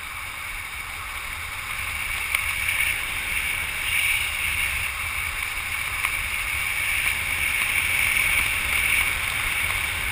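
Wind rushing over a camera's microphone during a parachute descent: a steady rush with low buffeting that swells and eases, growing a little louder after about two seconds.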